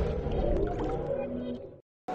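Tail of an electronic logo jingle: sustained synth tones over a low hum, fading, then cut off to silence shortly before the end.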